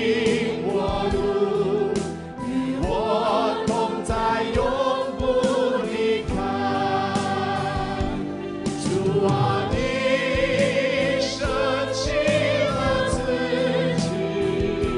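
Live worship band and choir singing a Mandarin worship song, with drums and guitars keeping a steady beat.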